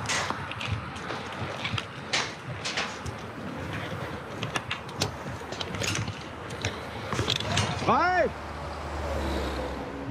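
Scattered metallic knocks and clanks from work on a steel tower structure, over a steady rushing noise. A short shouted call comes about eight seconds in, and a low hum comes up near the end.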